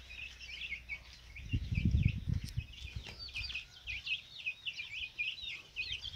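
A brood of Gigante Negro chicks peeping continuously, many short high cheeps overlapping in quick succession. A brief low rumble comes about one and a half seconds in.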